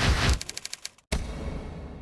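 Sound-design sting for an animated end card: a loud noisy swell, then a quick stuttering run of clicks. After a brief dropout, a heavy hit about a second in rings out and slowly fades.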